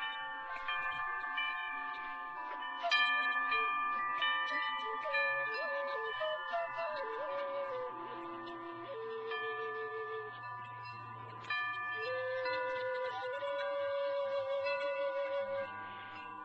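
Wind chimes ringing continuously in many overlapping metal tones, under a slow melody on a Navajo (Native American style) flute. The flute bends between notes and holds long, wavering notes.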